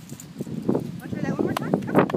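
Indistinct talking, with a run of short knocks and thuds.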